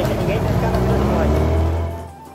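Small motorboat's outboard engine running with a steady low drone, under background music.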